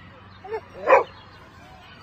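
Small dog barking: a brief yelp about half a second in, then one louder, short bark about a second in.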